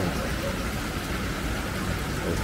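Water pouring steadily into a fish pond, a continuous splashing rush.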